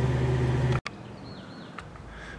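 A Jeep Wrangler's engine runs with a steady low hum, heard from inside the cab as it crawls up a steep rock trail, and cuts off abruptly under a second in. Then comes quieter open-air background with one short, wavering bird chirp.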